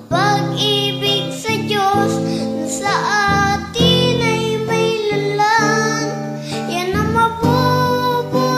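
Music: a song, a voice singing a melody over instrumental accompaniment.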